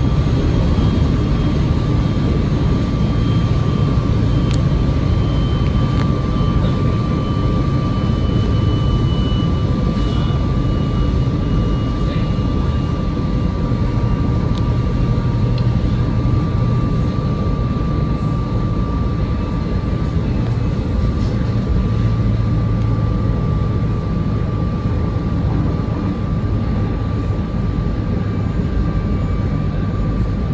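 SEPTA electric commuter train running at speed, heard from the cab: a steady loud rumble from the wheels and running gear, with a steady high-pitched whine over it.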